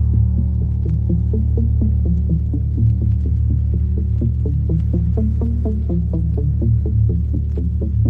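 Electro dance music: a heavy, sustained bass drone under a fast repeating pattern of short synth notes, about four to five a second.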